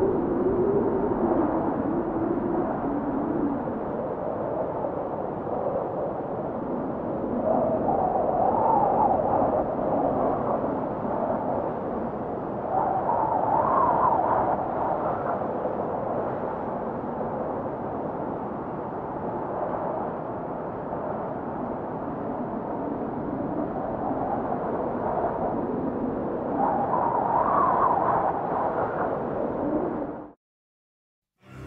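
Wind blowing across snow, with a wavering tone that rises and falls and swells in gusts three times.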